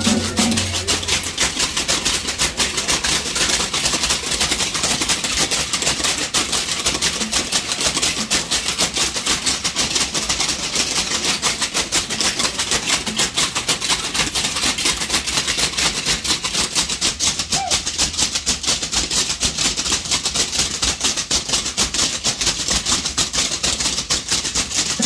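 Matachines dancers' hand rattles (sonajas) shaken together in a fast, steady rhythm, with a drum beating underneath.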